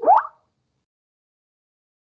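A Microsoft Teams chat-message notification sound: one short rising plop right at the start, lasting about a third of a second.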